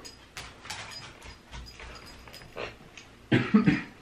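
Faint rustling and scattered light clicks, then a person coughing several times in quick succession near the end.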